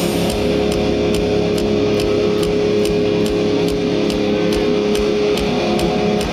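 Heavy metal band playing live through a festival PA, heard from within the crowd: distorted electric guitars hold a sustained chord over a steady drum beat, and the chord changes near the end.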